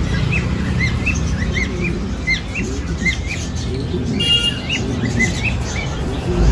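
Caged birds chirping: a run of short rising-and-falling chirps, two or three a second, with one louder, harsher call about four seconds in, over a steady low rumble.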